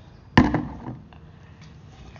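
A plastic sippy cup with water in it banged down once on a table: a single sharp knock about half a second in, fading over the next half second.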